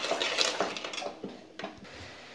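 A spoon clinking and scraping against a metal kadhai a few times while sugar and water are stirred over the heat to melt the sugar, over a soft bubbling hiss. It grows quieter in the second half.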